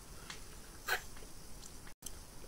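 Faint wet mouth sounds of a person sucking and chewing on a lemon wedge, with one short sharp smack about a second in.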